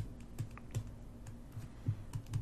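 Pen stylus tapping and scratching on a tablet screen while writing by hand: a scatter of faint, irregular clicks and taps.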